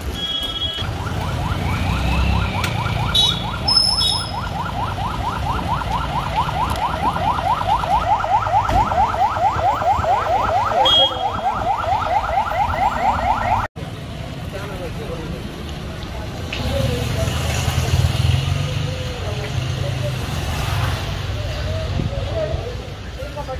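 An electronic vehicle alarm sounding a fast run of repeated rising whoops, several a second, for about thirteen seconds, then cut off suddenly. Street noise and a few short chirps are heard alongside it.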